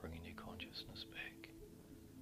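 A faint whispering voice for about the first second and a half, over soft ambient background music with steady sustained tones.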